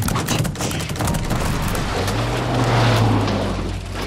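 Dense rain of fish falling from the sky, a rapid volley of thuds and slaps on a car's body and windshield and on the snowy ground, thickest at the start. A low drone swells up in the second half and fades near the end.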